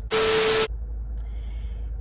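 A loud burst of static hiss lasting about half a second, shortly after the start, with a steady hum running through it. Before and after it, the car's air runs as a steady low rumble.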